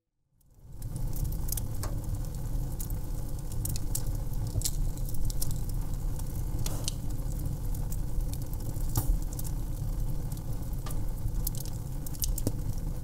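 Wood fire burning on a grill: a steady low rumble of flames with scattered sharp crackles and pops, fading in about half a second in.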